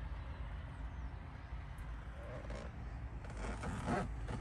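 Cummins X15 605 diesel idling steadily in a Peterbilt 389, a low even rumble heard from inside the cab.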